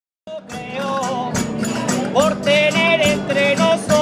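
Aguilando folk music from Aledo, Murcia, played live, with tambourine strokes over a wavering melody line. It starts abruptly a quarter of a second in.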